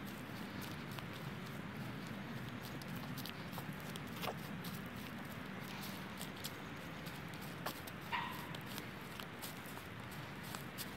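Footsteps through dry, matted grass and fallen leaves, a run of soft irregular crunches and clicks over a steady low background rumble, with one brief sharper sound about eight seconds in.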